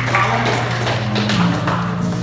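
Background music with a steady, held low note.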